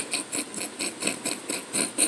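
A man's breathy, wheezing laughter in short even pulses, about four a second, with a bite of food still stuck in his throat.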